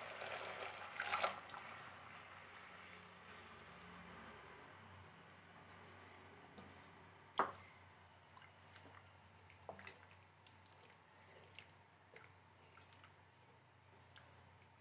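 Pomegranate juice being poured into a pan of boiling liquid, a faint bubbling, pouring hiss that dies away over the first couple of seconds, then quiet stirring with a wooden spoon. A single sharp knock comes about halfway through, with a few faint taps after it.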